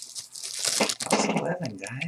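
Crinkling and tearing of a trading-card wrapper as it is handled and ripped open, with crackly bursts throughout.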